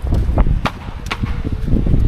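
Low rumbling noise on the microphone as the camera is carried along, with a few sharp clicks and knocks in the first half.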